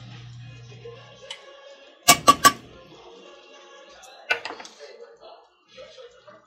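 Metal spoon knocked three times in quick succession against a stainless steel cooking pot, then once more a couple of seconds later, over quiet background music. A low hum stops about a second in.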